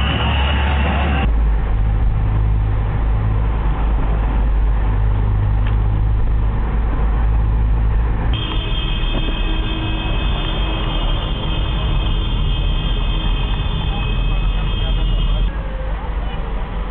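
Steady low rumble of a car's engine and tyres heard from inside the cabin while driving. A few seconds of music open it. From about eight seconds in, a steady high whine joins and stops shortly before the end.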